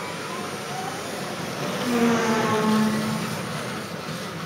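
Small electric motors of Kyosho Mini-Z radio-controlled cars whining and buzzing as they run around the track, swelling to their loudest for about a second midway.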